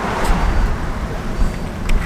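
Street traffic noise: a steady roadway rumble from passing cars, with a short click about a quarter second in and another near the end.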